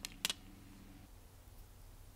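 A single light click as metal tweezers are set down on the rubber repair mat, then only a faint steady low hum.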